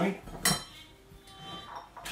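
A single sharp clink of kitchenware being handled on a kitchen worktop about half a second in, with a brief ring after it.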